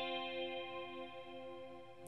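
Electric guitar with a chorus effect, through a Boogie amp: two clean notes, the first fret on the B string and then on the high E (C and F), left ringing together and slowly fading.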